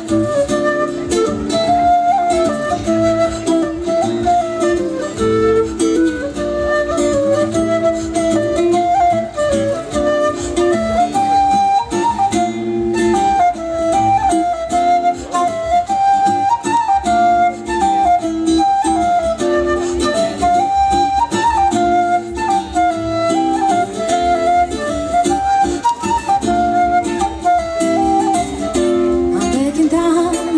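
Live folk band playing an instrumental dance tune: a flute carries a lilting melody over acoustic guitar and a steady low accompaniment.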